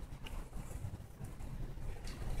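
Quiet room tone with a steady low rumble and a couple of faint small clicks.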